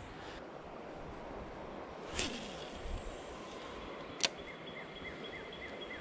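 A cast with a spinning rod and reel: a swish about two seconds in as line hisses off the spool, a sharp click about four seconds in as the bail snaps shut, then the reel being cranked with a light, even ticking of about three a second. A steady outdoor hiss from the creek lies underneath.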